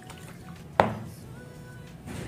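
A single sharp knock about a second in, a plastic blender jar bumped against the counter as it is handled, over faint background music.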